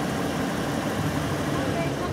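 Toyota 4Runner's V6 engine idling steadily.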